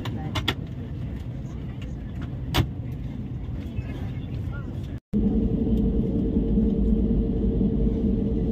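Airliner cabin din with passenger voices and a few sharp clicks. After a cut about five seconds in, the jet engines give a steady drone with a constant hum, heard from inside the cabin as the aircraft taxis.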